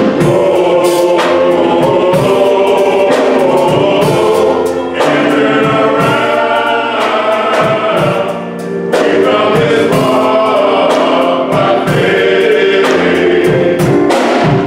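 Men's gospel choir singing in harmony, accompanied by a drum kit keeping the beat.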